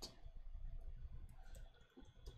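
Computer keyboard keys tapped in a short, irregular run of faint clicks, as code is deleted and retyped.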